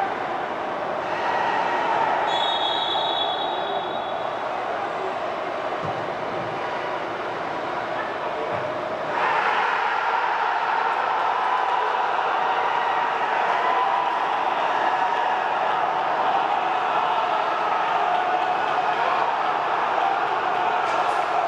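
Steady roar of football-stadium ambience during match play, with a short high whistle blast about two and a half seconds in. The roar grows louder about nine seconds in.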